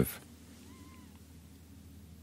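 A faint, short animal call, rising then falling in pitch, about a second in, over a low steady room hum.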